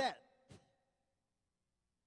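A man's amplified voice finishing a word, followed by a short breath about half a second in. Then there is dead silence.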